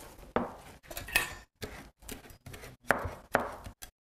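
Chef's knife chopping fresh mint leaves finely on a cutting board: irregular sharp knocks of the blade against the board, two or three to a second.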